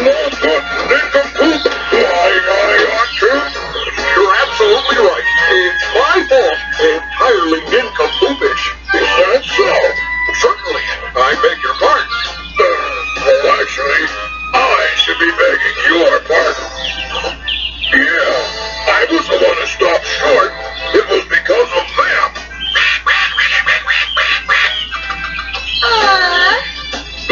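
Cartoon soundtrack from a VHS tape playing through a small TV's speaker: continuous music with a voice singing over it and a low steady hum underneath.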